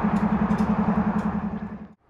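Diesel locomotive engine idling, a steady rapid low throb of about ten beats a second, fading out to silence near the end.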